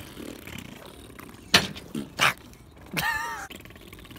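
A few short, sharp, breathy bursts, the first the loudest, then a brief high-pitched vocal squeal about three seconds in.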